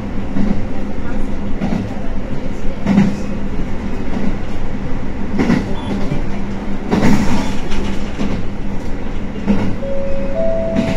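JR Hokkaido H100 DECMO diesel-electric railcar running along the line, heard inside its cab: a steady low hum from the drive with the running noise of the wheels. Several wheel knocks over rail joints come every second or two.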